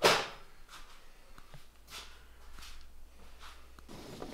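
Sliding solar-panel mount moving on its metal slide rails and gas struts: one sharp swish right at the start, then several fainter swishes.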